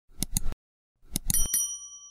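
Subscribe-button animation sound effects: two quick mouse clicks, then about a second in another click and a bright bell ding that rings on and fades over most of a second.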